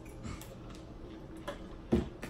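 Light clicks and taps of bottles and food being handled at a table, with one sharp knock near the end.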